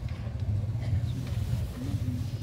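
Steady low rumble in a pause between amplified speech, with a brief voice sound near the end.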